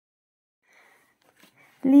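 Mostly near silence, with a faint, brief rustle of hands touching a crocheted coin purse on a wooden table about a second in; a woman starts speaking near the end.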